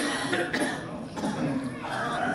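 Men's voices shouting on a football pitch during play: a sudden sharp call at the start, then further short calls.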